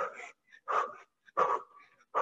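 A woman breathing hard during fast cardio footwork, sharp huffing exhalations about every 0.7 s, four in all.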